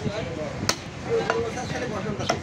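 Butcher's cleaver chopping through beef into a wooden stump block: one sharp chop a little under a second in, then a lighter strike about half a second later.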